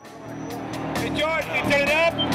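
Electric guitar played with distortion through an amplifier: sustained notes bent and shaken with wide vibrato, coming in from silence and growing louder.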